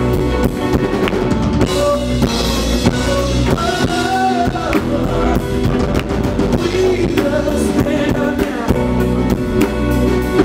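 Live rock-soul band playing an instrumental passage: a drum kit keeping a steady beat under bass, electric keyboard and electric guitar, with no vocals.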